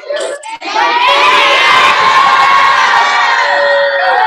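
A classroom of children cheering and shouting together over a video call, a burst of thanks; the noise swells up about a second in and stays loud.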